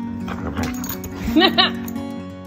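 Boxer–Old English bulldog mix giving two short, rising yips in quick succession about a second and a half in, over background acoustic guitar music.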